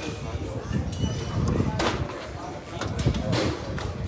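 Indistinct speech over steady low background noise.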